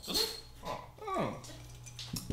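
A few short voice-like sounds, the last one a pitched call sliding steeply down in pitch.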